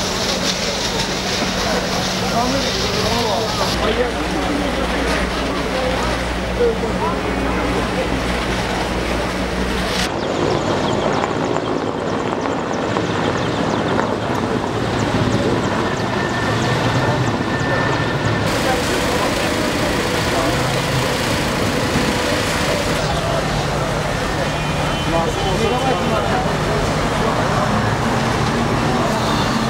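A crowd of onlookers talking and calling out over a steady low hum of street and engine noise. The sound changes abruptly about ten seconds in and again a little past halfway, where one phone recording cuts to another.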